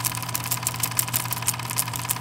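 Film projector sound effect: a steady mechanical clatter of rapid, even ticks over a low running hum.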